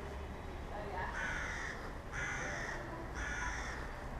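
A bird calling three times, each call about half a second long and about a second apart.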